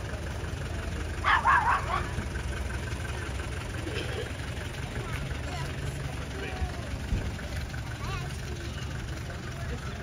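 An ice cream van's engine idling with a low steady hum. A dog barks about a second and a half in, over faint background voices.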